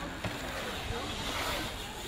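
Steady rushing noise of a BMX bike's tyres rolling over the concrete bowl of a skatepark ramp.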